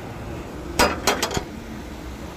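A quick run of about five sharp metallic clinks and knocks, the first the loudest, from the metal fuel tank cap and filler of a truck being handled as it is closed up after a full fill.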